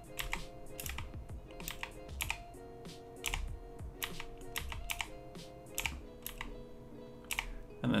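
Computer keyboard keys clicking irregularly, about two to three presses a second, over quiet background music with sustained notes.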